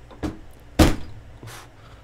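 Beer bottle being opened without a bottle opener, its cap knocked against a hard edge: one sharp knock a little under a second in, with fainter knocks around it.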